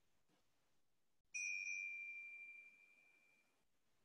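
A small bell or chime struck once about a second and a half in: a single clear, high ring that fades away over about two seconds. It marks the end of the final relaxation.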